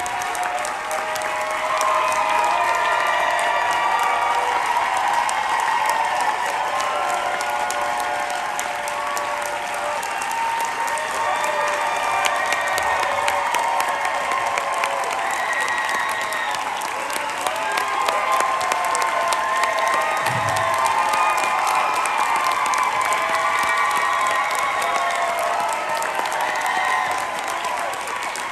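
Theatre audience applauding a curtain call: dense, steady clapping with many voices cheering and shouting throughout.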